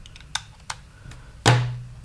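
Plastic LEGO EV3 brick being handled: two light clicks as the USB cable is plugged into it, then one loud thunk about one and a half seconds in as the brick is set down on the table.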